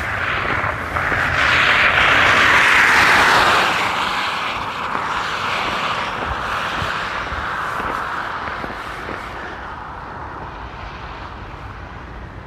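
A vehicle passing on a wet, slushy road: tyre hiss that swells over the first few seconds, then fades away slowly.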